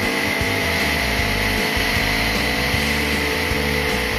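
CFMoto 400NK's parallel-twin engine running at a steady cruise on the expressway, with wind rushing over the microphone, and background music underneath.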